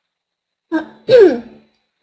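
A woman clearing her throat once, a short vocal sound falling in pitch that starts about two-thirds of a second in and lasts about a second.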